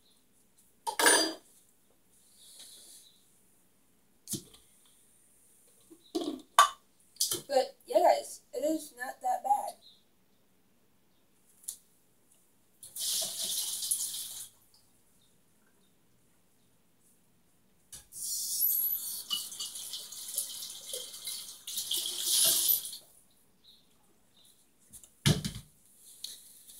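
Tap water running into a sink in two spells, a short one and a longer one of about five seconds, as blender parts are rinsed. Between them come knocks and clatter of the parts being handled, with a low thump near the end.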